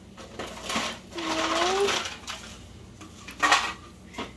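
Light metal clinks and taps from a stainless measuring spoon being handled at a counter and tipped into a water bottle. The loudest knock comes about three and a half seconds in. A person hums a short note partway through.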